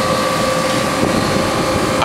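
Carrier Comfort Series central air-conditioner condensing unit running in cooling mode: a steady rush of the condenser fan and compressor, with two steady tones running through it.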